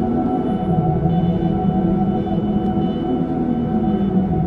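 Ambient meditation drone music of layered, steady sustained tones over a low wavering hum, presented as a 639 Hz solfeggio-frequency piece.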